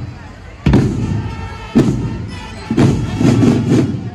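Marching drum band playing loud unison drum and cymbal hits, one about every second, then a quick run of four hits near the end.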